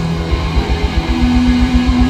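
Live rock band playing with electric guitars, bass, drums and keyboard. A fast, even low pulse runs at about eight beats a second, and a held note comes in about halfway through.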